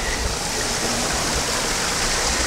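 Stream water pouring steadily over a micro-hydro intake's Coanda screen, the small stream running at high flow after heavy rain.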